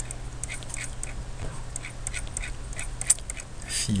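Light, irregular clicking of a computer keyboard and mouse, several clicks a second, over a low steady hum.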